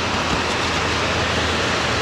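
Steady hiss of heavy rain, even and unbroken, with a low steady hum underneath.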